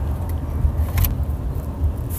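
Car cabin noise on the move: a steady low road-and-engine rumble heard from inside the car, with one short click about a second in.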